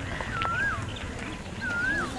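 A high whistled animal call, a short level note that rises and drops away, sounding twice about a second apart.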